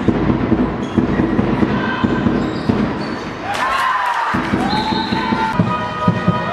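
Handball game on a sports-hall floor: the ball bouncing and players' feet thudding, with shoe squeaks in the second half.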